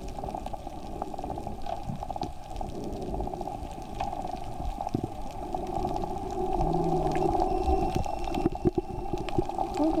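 Muffled, steady rushing and bubbling of water heard through an underwater camera, a dull band of noise dotted with small clicks and pops, growing a little louder in the second half.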